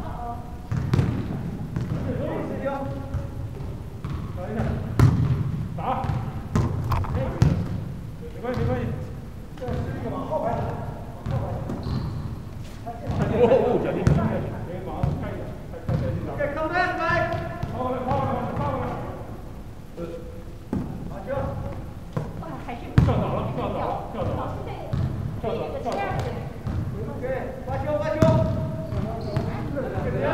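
People talking and calling out in a large echoing gym, with a few sharp thuds of a volleyball being hit or bouncing on the hardwood floor.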